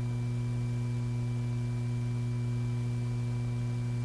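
Steady electrical hum: a strong low hum with several fixed higher tones over it, unchanging throughout, with no clack of the gun's bolt or any other action sound.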